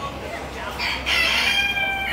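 A rooster crowing: one long crow that starts a little under a second in and carries on past the end.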